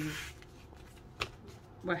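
Paper handling: sticker sheets and a sticker booklet being picked up and slid across a desk, with a soft rustle and one sharp tap a little past halfway.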